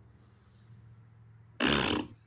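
A man blowing a short raspberry, his tongue pushed out between his lips: one brief loud buzzing burst near the end. Before it, only a faint steady low hum.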